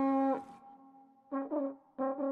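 Cartoon boat horn tooting with a brass-like sound, signalling that the boat is setting off. A long held note stops about half a second in, and short toots follow about a second and a half in and again at the end.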